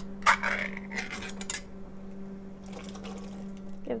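Canned peas and their juice poured from a metal can into a pot of boiling water, with metallic clinks of the can against the pot, mostly in the first second and a half. A steady low hum runs underneath.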